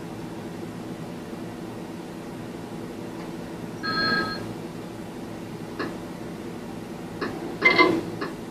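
A steady low electrical hum, broken about halfway by a short electronic ring of several tones, then a few clicks and a louder, brief ringing clatter near the end.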